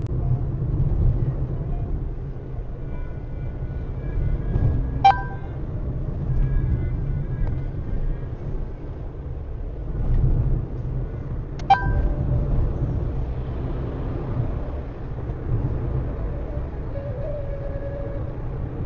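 Low, steady rumble of a car's engine and tyres, heard from inside the cabin through a dashcam microphone. Two sharp, ringing clicks come about seven seconds apart.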